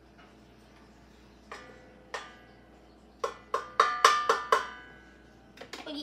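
A measuring cup knocking and clinking against a metal mixing bowl: two single knocks, then a quick run of about seven taps that ring on briefly.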